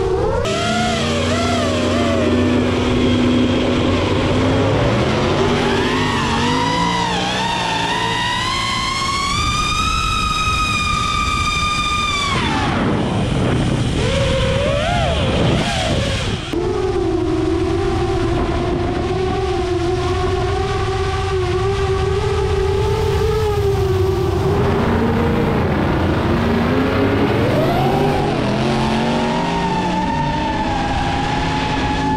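FPV quadcopter's motors and propellers whining, the pitch climbing and dropping with the throttle as it flies: a smooth climb for several seconds, a sudden fall about twelve seconds in, then a long steady stretch before rising again near the end.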